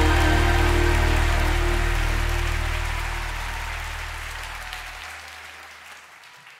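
A live band's final held chord rings out over crowd applause, the whole sound fading steadily. The lowest notes drop away about five seconds in.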